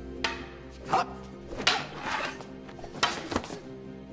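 Wooden practice swords clacking together in several sharp knocks, with a short grunt of effort, over background soundtrack music.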